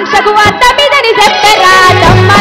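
A woman singing a Telugu folk song into a microphone, her voice bending and sliding between notes, over a rhythmic percussion backing.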